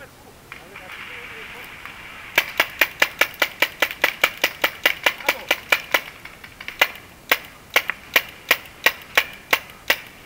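Paintball marker firing in a quick run of shots, about four a second, starting about two seconds in, then single shots more spaced out toward the end.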